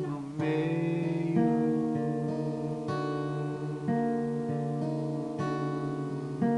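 Acoustic guitar strummed, a new chord struck every second or so and left to ring into the next.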